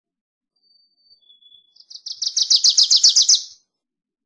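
Wilson's warbler singing: two faint, thin, high notes, then a rapid chattering run of about a dozen sharp notes, roughly seven a second, that swells louder and stops abruptly.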